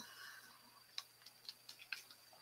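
Near silence with a few faint, short clicks, mostly in the second half, from someone working a computer.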